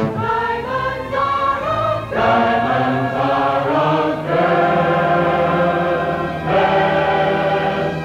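Orchestral film-musical score with a choir singing long held chords that change in steps about every two seconds.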